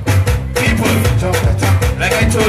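A live band playing an upbeat dance song: electric bass and keyboard over a steady, even beat.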